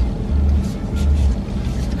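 Low, steady rumble inside a car's cabin, with faint background music.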